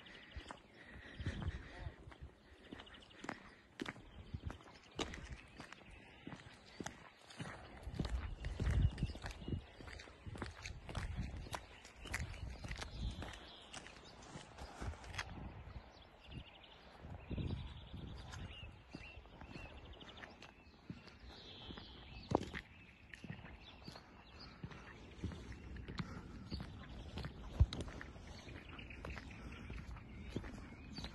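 Footsteps of someone walking over fresh snow, an uneven series of soft steps, with low thumps on the microphone.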